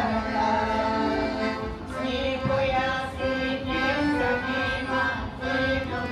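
Live Bulgarian folk dance music for a horo: a sustained, wavering melody over a drum beat.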